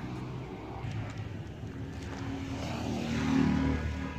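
A passing vehicle's engine: a steady low hum that swells to its loudest about three and a half seconds in, then begins to ease.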